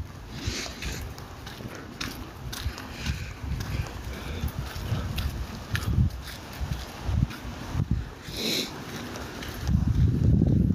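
Wind buffeting a phone microphone in irregular low gusts, with footsteps on a dirt lane and a short, higher-pitched sound about eight and a half seconds in.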